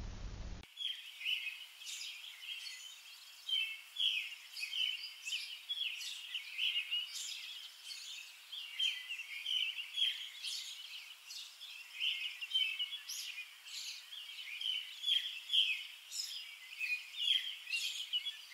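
Songbirds singing, many short chirps and warbling calls overlapping, starting about half a second in after a moment of faint room hum.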